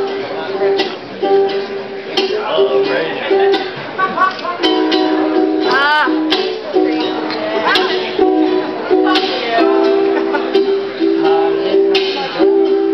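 Ukulele being played on stage, repeated plucked notes and chords in short runs with small breaks, while members of the audience whoop and call out.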